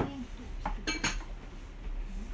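Crockery knocking together as dishes are handled: a light clink, then two sharp clinks in quick succession about a second in.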